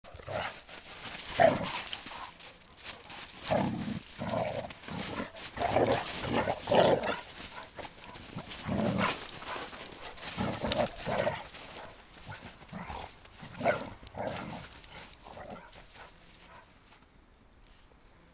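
Two dogs play-wrestling in snow, giving short barks and play noises in repeated bursts that die away near the end.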